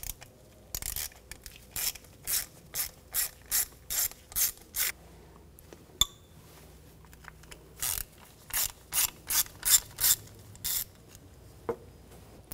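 Hand ratchet with a T20 Torx socket clicking as it backs out two screws on top of the engine: two runs of evenly spaced ratchet clicks, about two a second, with a pause between them.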